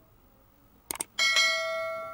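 Subscribe-button animation sound effect: a quick double mouse click about a second in, then a bell chime that rings and slowly fades.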